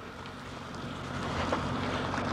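Rushing wind noise on the microphone with a low rumble underneath, growing louder toward the end.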